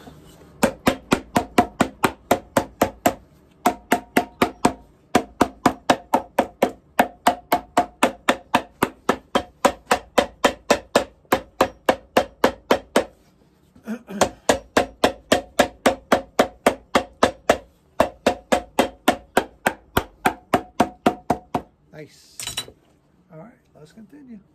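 Cobbler's hammer rapidly pounding a leather midsole down onto a boot's bottom, about five blows a second in long runs with short breaks and a pause about halfway. Each blow has a short pitched ring. One sharp knock sounds near the end.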